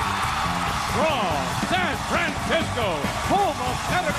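Late-night talk-show opening theme music, a band tune with drums, with an announcer's voice speaking over it from about a second in.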